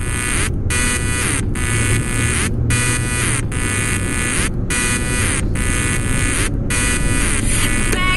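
A loud electronic buzz with brief dropouts about once a second, over the low rumble of a car driving on a highway.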